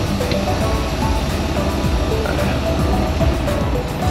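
Semi truck's diesel engine running with a steady low rumble as the truck pulls forward, heard from inside the cab, with music playing in the background.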